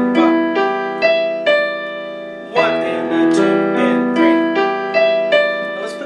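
Piano played slowly with both hands: broken chords and a melody, notes struck about every half-second and left ringing, with a new phrase starting about two and a half seconds in.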